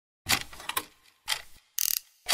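Clockwork mechanism sound effects: two sharp ratcheting clunks about a second apart, each trailing off in a rattle, then a short high hiss-like swish near the end.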